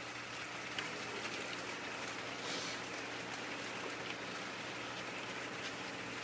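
Aquarium air stone bubbling steadily in a bucket of water, with a faint steady hum underneath.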